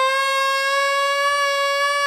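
A single long high note held on a wind instrument over a live band, its pitch creeping slightly upward, with no drums playing.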